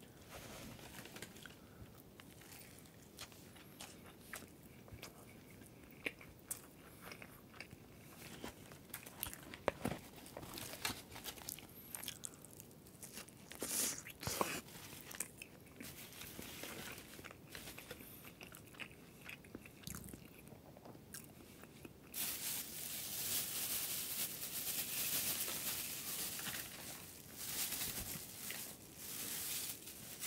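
Close-miked eating of breaded fried food (tonkatsu and fried shrimp): bites and crisp crunching chews of the fried coating, scattered at first, then a louder, continuous run of crunching in the last several seconds.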